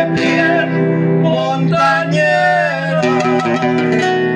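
A live group of acoustic guitars playing a plucked Colombian bambuco, with a melody line moving over steady bass notes.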